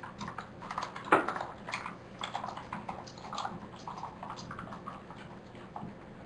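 Typing on a computer keyboard: irregular key clicks, several a second, with one louder keystroke about a second in.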